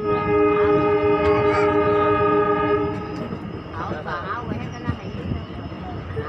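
Train horn sounding one long, steady blast of about three seconds, several pitches together, over the rumble of the coaches running on the track. After the horn stops, the running noise goes on.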